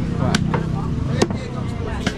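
A butcher's cleaver chopping meat on a wooden block: a few sharp chops, the loudest just past the middle. Underneath is the chatter and rumble of a busy street market.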